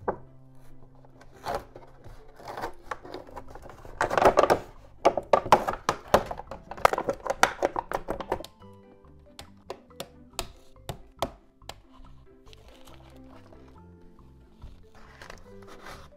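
Clear plastic toy packaging being handled and pulled open: loud crinkling and crackling for about four seconds in the middle, then scattered sharp clicks and taps. Soft background music runs underneath.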